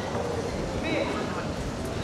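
Steady background chatter of many voices in a large, echoing sports hall, with a short higher-pitched call about halfway through.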